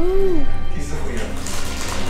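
Music and a voice from a television show playing in the room.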